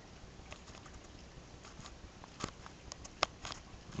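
Faint handling noise from a hand-held camera: a few short, sharp clicks and taps over quiet room tone. The sharpest click comes a little after three seconds in.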